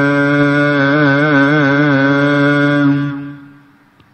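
A devotional singing voice holds the last note of a Gurbani line, wavering in a vibrato through the middle, then fades out a little after three seconds in.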